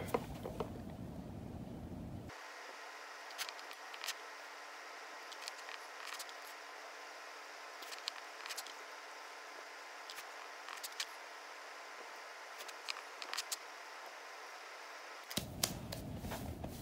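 Faint scattered clicks and taps of small nail-liquid bottles and a dip-powder jar being handled on a wooden table, over a thin steady hiss.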